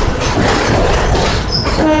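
Express train running through a rock tunnel, heard from an open coach door: a loud, steady rumble of wheels on rail with repeated clacks over the rail joints and a brief high wheel squeal. Near the end a steady horn tone begins.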